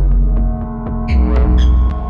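Experimental electronic music on an analog synthesizer: a very deep pulsing bass that swells up about a second in, under steady held tones, with short high blips and pitch sweeps scattered over the top.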